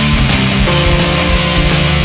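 Loud rock music with guitar, playing steadily; the held notes change about two-thirds of a second in.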